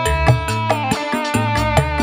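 A live dangdut band playing an instrumental passage: a held keyboard melody over electric bass and a steady drum rhythm.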